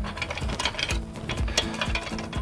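Chain walker (stretcher bar puller) being worked by hand: a rapid series of metal clicks as it walks along its chain, drawing high-tensile non-climb fence fabric tight.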